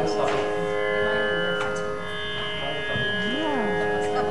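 Electronic tanpura drone: a dense, steady chord of sustained tones with strings plucked in a repeating cycle. A short voice slides up and down briefly near the end.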